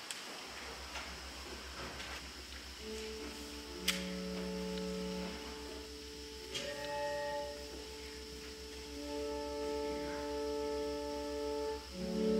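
Church pipe organ playing slow, sustained chords, with held notes entering about three seconds in over a pulsing low hum. A faint steady high-pitched whistle runs underneath, which the priest blames on the organ's blower acting up in the cold.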